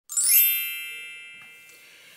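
Intro chime sound effect: a quick rising sparkle, then a bright, bell-like ding of several high tones that rings out and fades away over about a second and a half.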